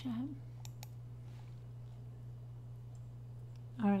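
A few short clicks of computer use in the first second and a half, over a steady low electrical hum.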